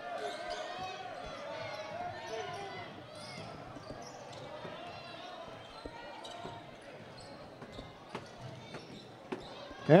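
A basketball bounced on a hardwood gym floor a few times, over a continuous murmur of spectators' voices in the gym.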